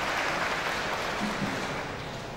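An audience applauding: steady clapping that is strongest in the first second and fades near the end.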